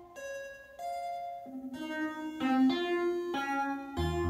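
Buchla modular synthesizer playing a melody of bright pitched notes, each held for a fraction of a second to about a second before the pitch changes.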